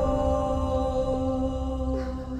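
Background music of slow, steady held notes.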